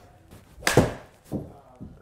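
A full swing with a golf iron in a small simulator bay: the club strikes the ball off the hitting mat and the ball smacks into the impact screen. The result is a few short, sharp knocks, the loudest about a third of the way in.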